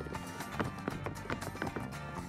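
Tap shoes of a tap line striking a stage floor, many sharp clicks in a quick, uneven rhythm, over loud recorded music.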